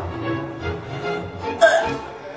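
Background music, with one short, loud gagging noise from a woman near the end as she sticks a finger in her mouth to fake vomiting.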